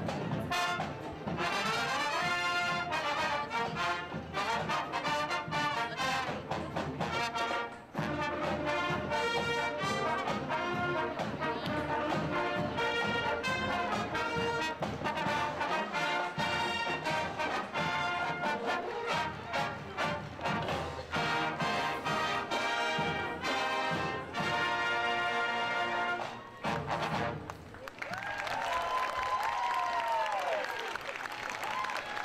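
High school marching band playing a parade march on massed brass, trumpets and trombones, with a steady beat. Near the end the playing stops and crowd noise takes over.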